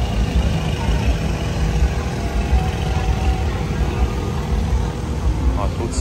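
Busy street ambience: a steady low rumble of road traffic and engines under indistinct crowd voices.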